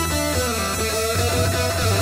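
Live rock band playing an instrumental passage, electric guitar out front over bass, keyboards and drums.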